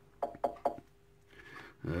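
Three quick, light clicks about a fifth of a second apart, like small metal parts being handled at a workbench, then a man says "um" near the end.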